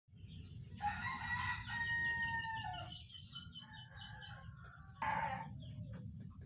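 Birds calling: one long call of about two seconds near the start that drops in pitch at its end, then a run of short high chirps, and a brief loud call about five seconds in.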